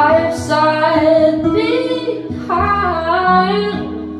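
A woman singing a slow melody into a microphone over acoustic guitar, in a few held phrases with gliding pitch.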